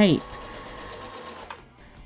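Brother LX27NT electric sewing machine running steadily as it stitches bias tape onto a curved skirt hem, with a faint steady motor hum; it stops about one and a half seconds in.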